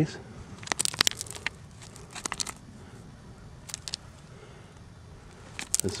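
Stones and gravel clicking and crunching in a few short clusters, about a second in, a little after two seconds, near four seconds and just before the end, as an agate is being dug out of a gravel pile.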